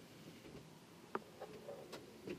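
Near-silent room tone with one faint short click a little past halfway.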